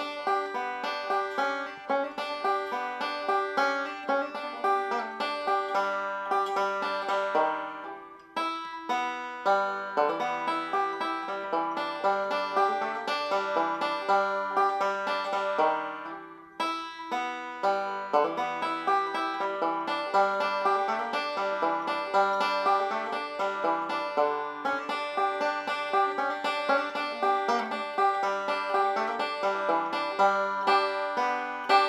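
Open-back five-string banjo played solo: a quick, continuous run of plucked notes in phrases, with brief breaks about eight and sixteen seconds in.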